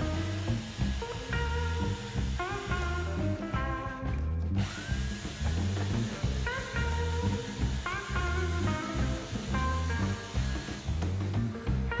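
Background guitar music with a steady bass beat, over an electric drill running and spinning a bolt in its chuck while a hacksaw cuts through it. The high hiss of the drill and saw breaks off briefly about four seconds in.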